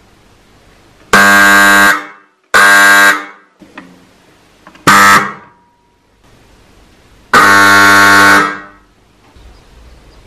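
Electric horn of an AŽD 97 level-crossing warning signal sounding four loud blasts: one of about a second, a shorter one, a brief one, then one of over a second. Each blast fades out quickly as it stops.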